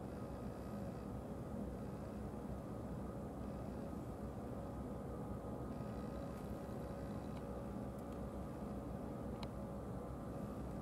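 A steady mechanical hum: several constant tones over a low rumble and a faint hiss, with a few faint clicks near the end.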